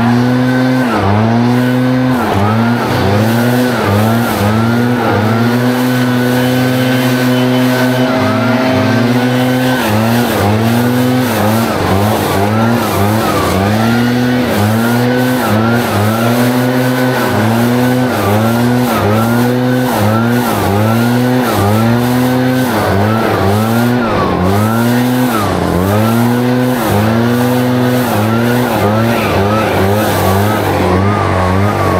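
Leaf blower running at high throttle, its pitch dipping and climbing back about once a second as the trigger is eased off and squeezed again while clearing a sidewalk and grass strip. It holds a steadier high note for several seconds in the first third.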